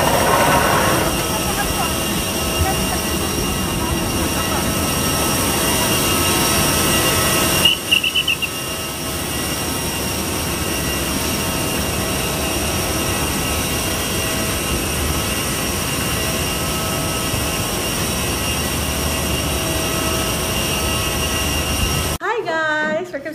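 Steady whine and rush of an airliner's jet turbines running on the airport apron, with several high tones held over the noise. A short warbling chirp is heard about eight seconds in.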